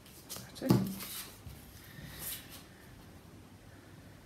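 A few light clicks and one sharp knock about a second in, as a ruler is moved and set down on card on a table, then a brief pencil scrape along the ruler.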